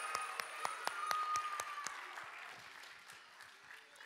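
Audience applauding, the clapping dense at first and then thinning out and fading over the last couple of seconds.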